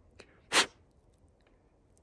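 A single short, sharp breath sound, like a quick sniff, about half a second in, with a faint tick just before it; otherwise near quiet.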